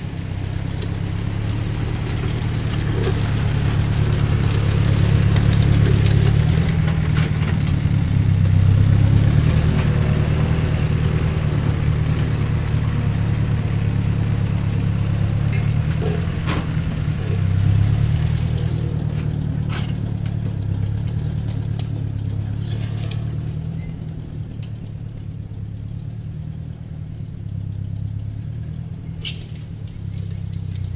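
Vintage Ford tractor engine running steadily as the tractor drives across the yard. It grows louder as it passes close, then fades as the tractor moves away in the last third.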